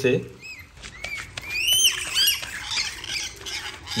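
Rainbow lorikeets giving a run of short, high, arching squawks while they splash about bathing in shallow water.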